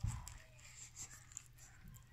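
A person chewing a mouthful of crispy, charred pizza crust: faint crunching and mouth noises, with a louder bite at the very start.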